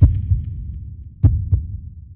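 Deep bass booms of a logo-intro sound effect, like heartbeat thumps: one hit at the start, then a double thump about a second and a quarter in, the rumble dying away near the end.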